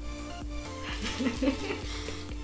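Quiet background music with a steady low pulse, and a faint voice briefly about a second in.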